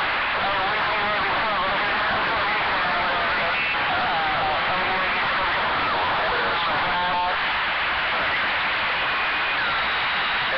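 CB radio receiver hissing with heavy static, with weak, garbled voices of distant stations coming through the noise. A short beep-like tone sounds about seven seconds in.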